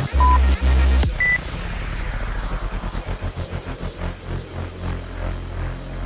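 Workout interval timer beeps over electronic dance music: a short beep near the start, then a higher, slightly longer beep about a second in that signals the switch from rest to work. At the same moment the heavy bass beat drops out and the music goes on as a quieter pulsing passage that fades.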